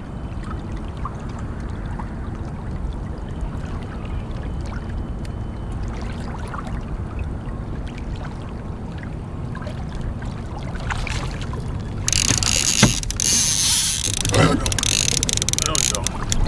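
Kayak moving through calm water with a steady low wash against the hull. About twelve seconds in, a trolling reel's drag suddenly starts buzzing loudly as line is pulled off, with a few clicks: a fish striking one of the trolled lines.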